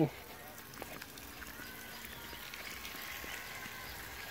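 Faint, steady hum of a water pump running, the pump that feeds the garden hose.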